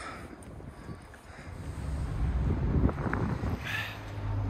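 Wind buffeting the microphone of a handheld camera: an uneven low rumble that grows louder about halfway through.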